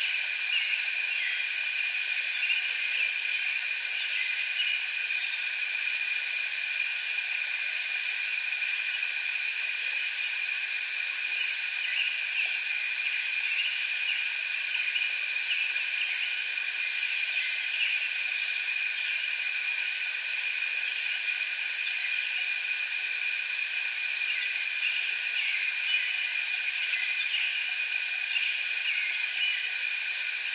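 A chorus of katydids calling: a steady, high-pitched insect drone made of several continuous shrill tones, the highest pulsing rapidly and evenly.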